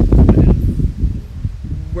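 Wind buffeting the microphone: a loud, uneven low rumble, strongest in the first half second.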